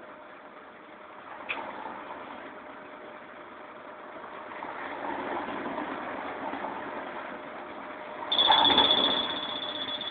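Interior of a Karosa Citybus 12M city bus drawing up at a stop, its diesel engine running steadily. About eight seconds in, a steady high-pitched door beeper starts with a louder burst of noise as the doors are released to open.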